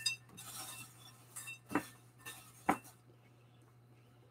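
A silicone spatula stirring dry cereal and nuts in a glass bowl: a soft rustle of cereal and three light clinks against the glass, the last about two and a half seconds in.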